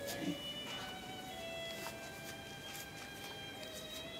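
Slow violin music of long held notes, the pitch stepping up a couple of times.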